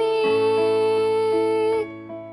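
A female voice holds one long sung note over soft electric piano chords. The note stops near the end, leaving the piano sounding alone.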